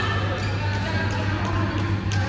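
Badminton rackets hitting shuttlecocks in a large hall: a few sharp, irregular taps over a steady low hum, with voices in the background.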